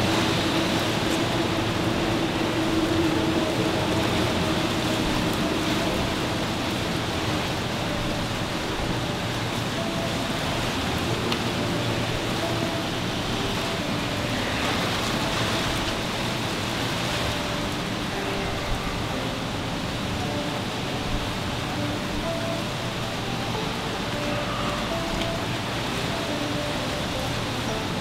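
A steady, even rushing noise with faint held musical tones under it.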